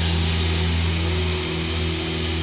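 Live synth-rock band holding a sustained low chord: a steady drone of bass and synth under a wash of cymbal hiss, with no vocals.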